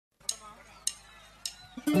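Three evenly spaced percussion clicks, about one every 0.6 seconds, counting in a karaoke backing track, which comes in with full instruments right at the end.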